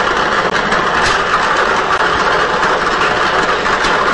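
Air-mix lottery ball machine running: a steady blower rush with the plastic balls tumbling and clicking inside the clear mixing chamber.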